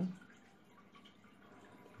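Quiet room tone with a faint steady hum; the tail of a spoken word at the very start.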